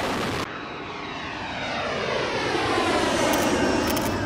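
Fighter jet's engines at full power, heard as a whoosh with a sweeping, phasing sound that slowly grows louder as the jet passes. A few sharp clicks come near the end.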